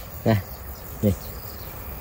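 Steady insect chorus, crickets by its sound, running under two brief spoken words.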